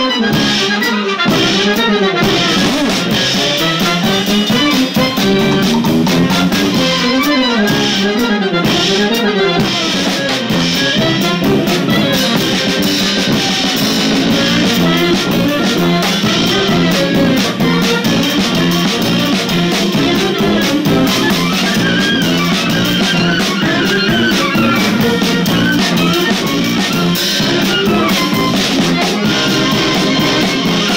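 A live brass band plays a klezmer-funk tune. A sousaphone, close to the recorder, plays a moving bass line, with horns and drums behind it.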